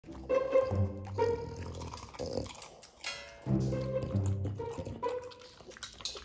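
Background instrumental music: a light tune played in short repeated phrases of held notes.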